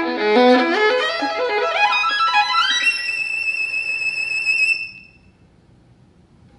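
Solo violin playing a fast run of notes that climbs steadily in pitch to a high held note. The note sounds for about two seconds and stops about a second before the end, leaving a quiet pause.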